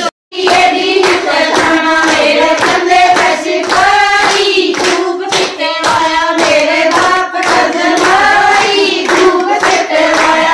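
A group of women singing a folk song together, with steady rhythmic hand-clapping keeping time. It begins after a moment's silence at the very start.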